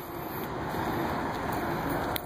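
Steady, even rushing outdoor background noise with no distinct events, growing slightly louder over the two seconds.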